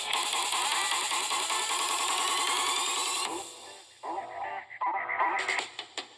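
Beatboxing run through the Voloco voice-effects app, coming out as electronic, music-like vocal sounds. A dense rhythmic stretch drops away after about three seconds, and short pitched bursts follow.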